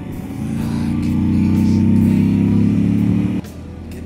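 Moto Guzzi V85 TT V-twin engine pulling under throttle, swelling in loudness and then dropping away suddenly about three and a half seconds in. Background music with a steady beat runs underneath.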